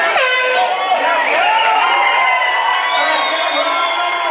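A horn sounds once, for about half a second, as the round clock runs out, signalling the end of the round; crowd shouting and cheering follow.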